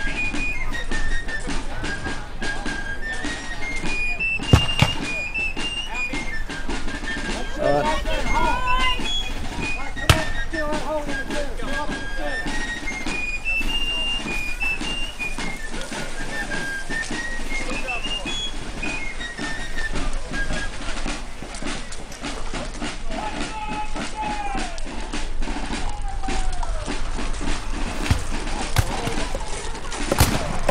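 A high, piping melody of single notes stepping up and down, its phrase coming back about every ten seconds, with voices talking over it. Two sharp knocks stand out, about four and a half and ten seconds in.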